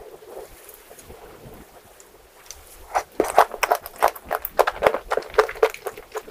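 Close-miked eating sounds: after a quieter stretch, a rapid run of wet mouth clicks and smacks of chewing begins about three seconds in.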